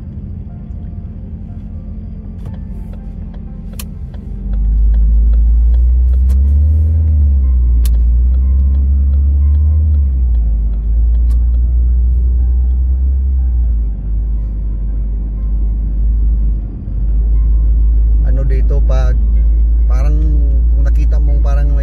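A loud, deep rumble sets in suddenly about four seconds in and holds, dipping briefly twice, over quieter background music. A voice comes in near the end.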